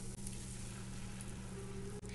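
Faint, steady sizzle of onion-garlic masala frying in a cast-iron pan as cooked whole black urad dal is tipped in, with a low steady hum underneath.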